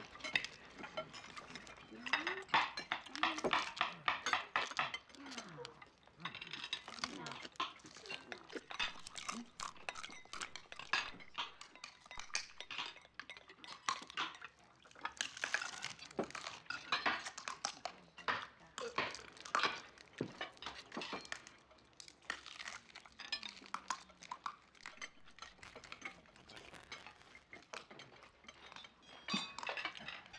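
Knives and forks clinking and scraping on china plates as several people eat at a dinner table: many small, irregular clinks that come thicker in a few spells.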